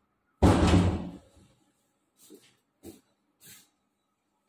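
A door bangs shut with a heavy thud that dies away over most of a second, followed by three faint knocks.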